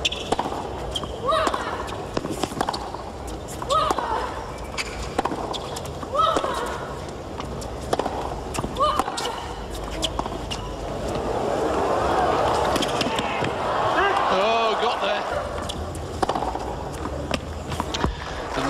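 Tennis rally: racket strikes on the ball about every second and a quarter, with a player's short grunt on every other shot. About eleven seconds in, the rally ends and the crowd cheers and applauds for a few seconds.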